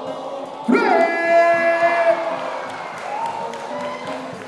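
A man's voice over a microphone PA, drawing out a long held call for about a second and a half, then another rising call near the end, with a crowd cheering beneath.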